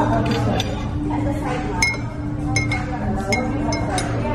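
A metal teaspoon stirring coffee in a ceramic mug, clinking against the side about five times from roughly two seconds in, each clink ringing briefly. Background music and voices carry on underneath.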